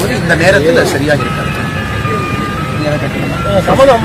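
Low, steady rumble of street traffic. A man's voice is heard in the first second. Through the middle a thin, steady high tone is held, stepping in pitch a couple of times.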